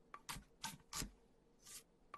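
A large kitchen knife cutting down through a baseball-like ball onto a wooden chopping block: three faint, sharp cuts about a third of a second apart, then a softer brushing sound a little after halfway.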